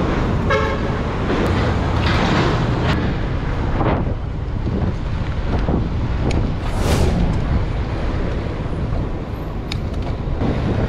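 Steady, heavy wind and road noise on the microphone of a bike camera while riding through city traffic. A short horn toot sounds about half a second in, and a brief hiss comes around seven seconds in.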